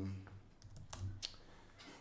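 A few faint computer-keyboard key clicks, spaced irregularly, as a short chat message is typed.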